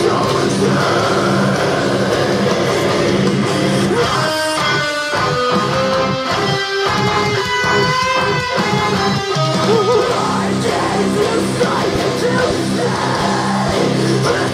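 Distorted electric guitar playing a metalcore/djent riff of heavy, low, rhythmic chugs. About four seconds in it gives way to a passage of ringing single notes, and the low chugging returns near the tenth second.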